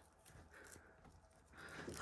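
Near silence, with faint soft ticks and scrapes of a boning knife cutting venison on a wooden chopping board.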